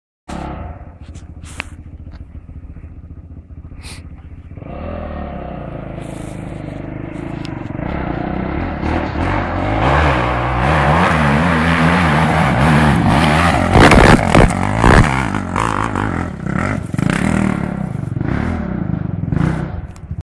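Yamaha YZ450F four-stroke single-cylinder dirt bike engine revving under load as it climbs toward the microphone. It grows steadily louder, its pitch rising and falling with the throttle, and is loudest about two-thirds of the way through, where a few sharp cracks stand out.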